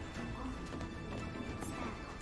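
Soundtrack of a TV drama playing: background music under a voice announcing a game round, with repeated knocks mixed in.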